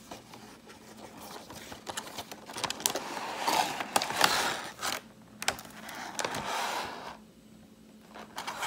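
Clear plastic blister tray and cardboard box packaging being handled: the plastic crackles and crinkles amid scattered sharp clicks, busiest and loudest around the middle, then settling near the end.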